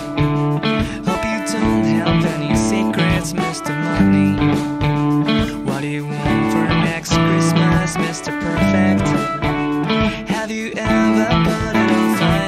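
Electric guitars playing a driving rock verse riff over a band backing track with a steady drum beat.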